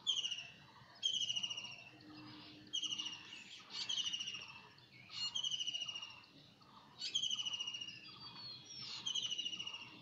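A bird calling over and over: short, high trilled notes that fall in pitch, about one a second.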